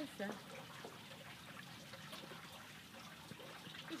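Faint, gentle splashing and lapping of pond water around a person swimming.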